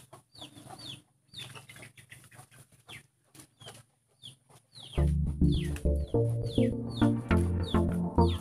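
Birds chirping: a run of short, high chirps, each falling in pitch, a few every second. About five seconds in, background music comes in, louder than the chirps, which go on under it.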